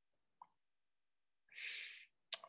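Near silence: a pause in speech, with one faint short pop about half a second in and a brief breath drawn in near the end.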